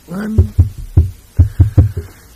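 A short vocal sound, then about six short, low thumps at uneven intervals over the next second and a half.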